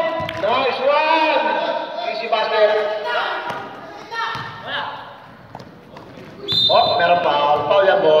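Men calling out and shouting in a large, echoing sports hall during a basketball game, with a basketball bouncing on the court floor. The voices drop off about halfway through and pick up loudly again near the end.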